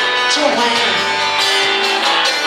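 Acoustic guitars playing an instrumental passage of a song, with several notes held and overlapping.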